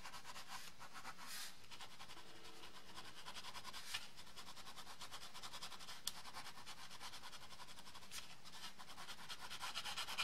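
Pen tip scratching on matte kraft card in quick, short back-and-forth strokes, a faint steady rasp, with a small tick about four seconds in and another about six seconds in.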